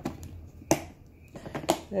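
Clear plastic storage tub's blue clip-on latching handles being snapped open, giving two sharp plastic clicks about a second apart.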